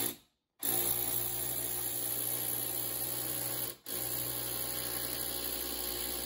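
Electric drill with a long drill bit boring into the bedroom wall, running at a steady speed, stopping briefly about four seconds in, then running again.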